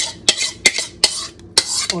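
A spoon scraping and tapping against the inside of a mixing bowl as a thick salsa-and-yogurt sauce is scraped out into the pot: rough scrapes broken by about four sharp clicks.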